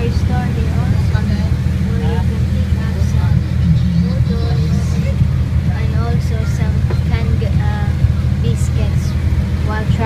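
Passenger ferry's engine running with a steady low drone, heard from inside the passenger cabin, with people talking over it.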